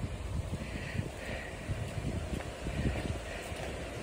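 Wind buffeting the phone's microphone: a steady low rumble with faint flutter, no clear single event standing out.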